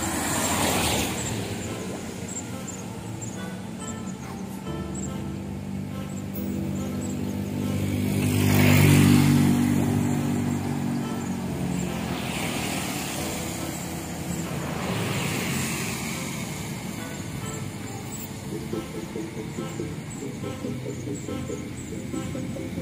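Cars passing on a wet road, their tyres hissing as each swells up and fades, four times, the loudest about nine seconds in. Background music plays throughout.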